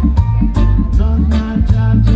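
Live reggae band playing: a heavy bass line under short, regular chord strokes about twice a second, with a melody line above.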